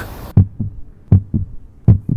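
A heartbeat sound effect: low thuds in lub-dub pairs, a little under one pair a second, after the outdoor background cuts off abruptly.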